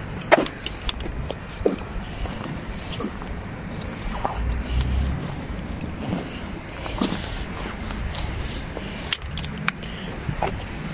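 Steady low outdoor rumble that swells briefly around the middle, with scattered short clicks and taps.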